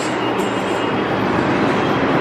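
Subway train running in the station, a loud, steady rumble and rush of noise.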